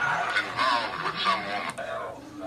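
Ghost box sweeping through radio stations: choppy snatches of voice and music chopped up with static, which the investigator takes for spirit replies.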